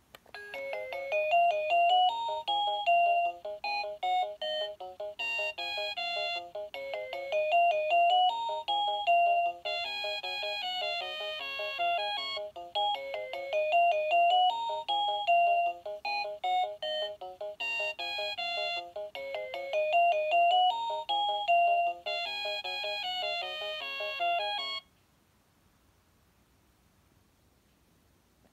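VTech Rocking Animal Bus baby toy playing an electronic beeping melody through its small speaker. The tune runs on without a pause and cuts off abruptly about a second before the end.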